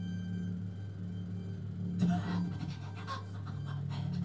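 Live improvised music for electric harp, voice and double bass: a steady low drone holds throughout. About halfway in, a short burst of breathy vocal sound rises over it, followed by a few fainter sounds.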